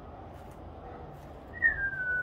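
A person whistling one short note that falls in pitch, about one and a half seconds in, over quiet background.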